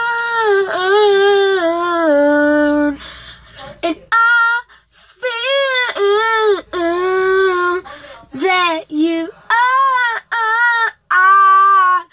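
A boy singing wordless, drawn-out notes, a slow stepping-down run first and then a string of short wailing notes that bend up and down, with a hand cupped over his mouth.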